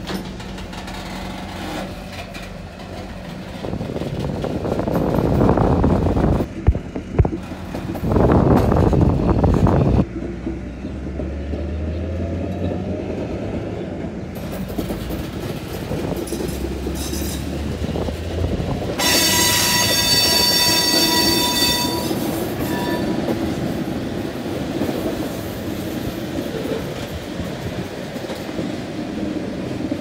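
Covered hopper car rolling slowly on the track, with loud rumbling in the first third and a low diesel drone from the Trackmobile moving it. About two-thirds of the way in, a shrill squeal lasts about three seconds, typical of steel wheel flanges grinding against the rail on a curve.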